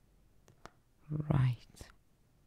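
A woman's brief, soft whispered murmur about a second in, with a few faint light clicks around it from a plastic phone case being handled.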